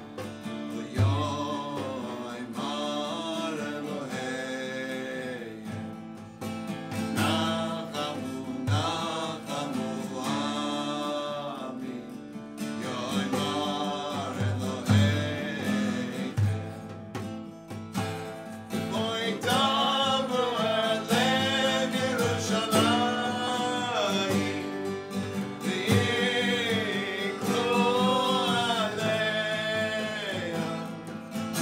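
Acoustic guitar strummed as accompaniment to a man and a woman singing a melody together.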